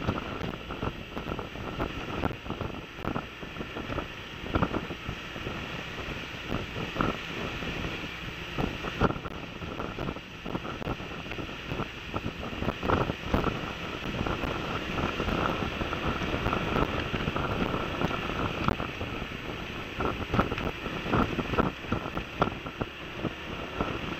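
Wind rushing and buffeting on the microphone of a camera mounted on a moving scooter, with many irregular gusty thumps, over the steady running noise of the ride.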